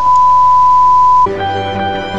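A loud, steady single-pitch beep at about 1 kHz lasting about a second and a quarter, a censor bleep laid over the speaker's words. It cuts off and background music follows.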